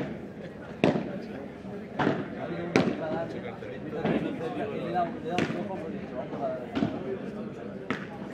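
A padel rally: about six sharp pops of the ball being struck by rackets and bouncing, at irregular intervals, with voices talking in the background.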